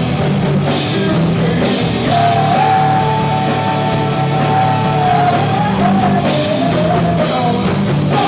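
Live rock band playing loud: electric guitars, bass guitar and drum kit with repeated cymbal hits. A long held high note comes in about two seconds in and begins to waver after about five seconds.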